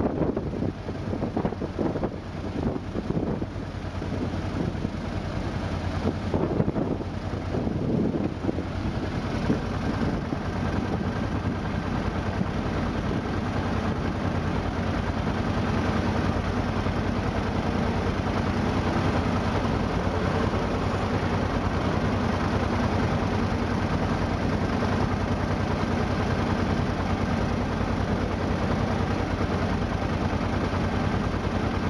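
A steady low mechanical hum. For roughly the first ten seconds it comes with uneven rumbling, knocking noise, then it settles into an even drone with a faint high whine.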